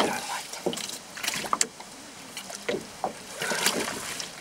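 Splashing and scattered sharp knocks as a hooked zander is scooped out of the water in a landing net beside a small rowboat.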